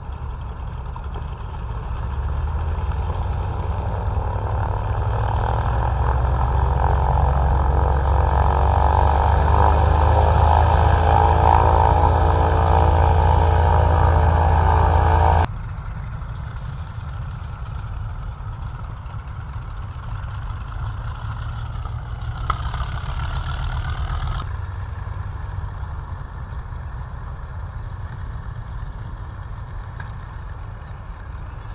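B-25 Mitchell bomber's twin Wright R-2600 radial engines running, growing steadily louder as the aircraft rolls along the runway toward the microphone, then cut off abruptly about halfway through. After that the engines are heard more faintly at a lower, steadier level, with a brief higher-pitched sound about two thirds of the way in.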